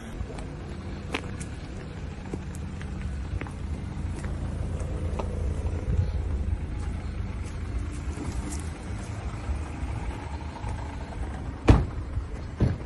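Low, steady rumble of car engines running nearby, with scattered small clicks and a loud knock near the end.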